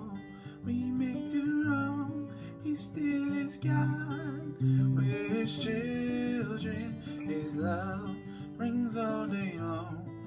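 Acoustic guitar being strummed, with a man singing a worship song over it, his held notes wavering in pitch.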